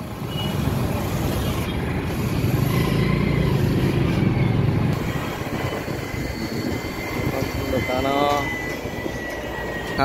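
A two-wheeler's engine running with road and wind noise, heard from on the moving bike in town traffic. It is louder over the first few seconds and eases off after. A short spoken phrase comes near the end.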